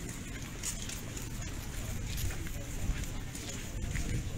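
Indistinct voices of people nearby and scattered footsteps on pavement, over a steady low rumble of outdoor background noise.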